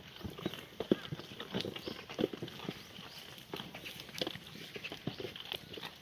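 A herd of black goats feeding on a pile of dry cut vines on stony ground: many irregular clicks, knocks and rustles from hooves shuffling on the gravel and stems being tugged and chewed.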